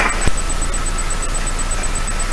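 Steady background hiss with a faint high whine running through it, and one light knock shortly after the start.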